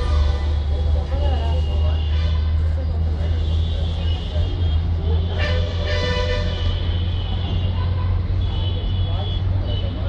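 A steady low rumble of background noise with faint higher tones over it, and a short rising sweep about five and a half seconds in.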